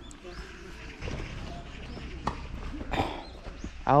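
Faint background voices over a steady low outdoor rumble, with a couple of light clicks.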